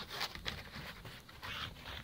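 Pit bull spinning in circles in the snow: a run of short, rough, irregular huffs and scuffling sounds, several a second.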